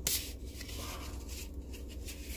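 Handling noise from a paper coffee cup being turned and rubbed close to the microphone: a sharp scrape at the start, then a few fainter scratchy rubs. A steady low car-cabin rumble runs underneath.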